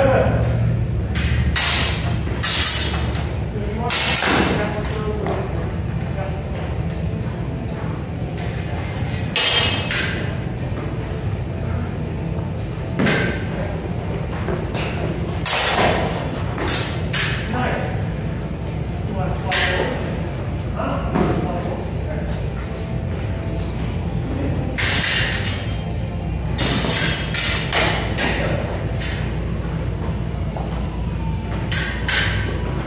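Training swords clashing in sparring: irregular sharp strikes, some in quick clusters and some ringing briefly, echoing in a large hall over a steady low hum.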